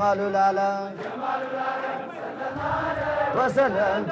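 Men's Islamic hadra devotional chanting through a microphone and PA: a lead voice holds one long note, then several voices chant together with a wavering melody.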